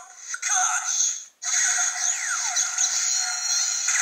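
Melon Lockseed toy's small built-in speaker playing its third sound, the finishing-move sound: a short electronic voice call, then about three seconds of synthesized music with a falling swoop in the middle. It is thin and has no bass.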